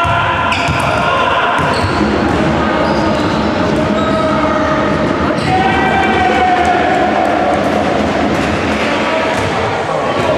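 Basketball dribbled on a wooden gym floor during play, with players calling out to each other in the middle of the stretch, all echoing in a large sports hall.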